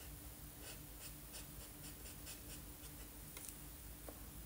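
Felt-tip marker scratching on paper in quick short colouring strokes, about three a second, faint, over a steady low hum.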